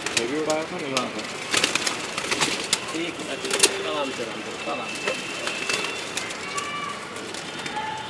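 A flock of Madrasi high-flyer pigeons in a rooftop loft, cooing and fluttering, with many sharp wing claps and rustles.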